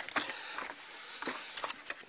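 A few faint clicks and light taps from hand tools and parts being handled as the screws holding the mass air flow sensor are undone, over a low steady hiss.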